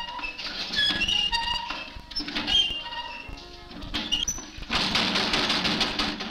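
Film-score music of short, separate pitched notes, with a rushing wash of noise lasting about a second and a half near the end.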